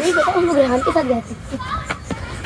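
Speech: a voice talking for about the first second, then a quieter stretch.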